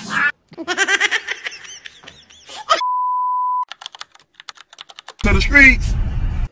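A single steady electronic beep at one pitch, lasting just under a second, about three seconds in, after a stretch of voice. A quick run of clicks follows it, and loud speech comes in near the end.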